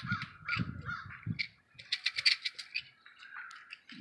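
Birds calling in a run of short repeated calls through the first second and a half. About two seconds in comes a brief cluster of sharp clicks, the loudest sound, as a toothpick container is handled.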